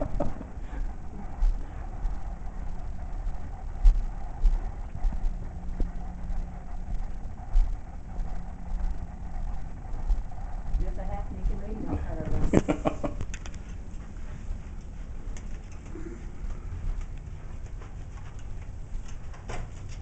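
Handheld camera carried along a corridor: uneven low thumps of footsteps and handling over a steady hum, with a brief louder sound about two-thirds of the way through.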